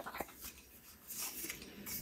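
Faint plastic clicks and light rustling as the legs of a selfie-stick phone tripod are folded out by hand, with two sharp clicks right at the start.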